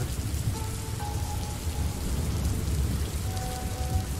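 Steady rain from an added rain-sound track, an even hiss of drops with a deep low rumble underneath.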